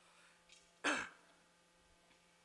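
A woman clearing her throat once, briefly, into a handheld microphone.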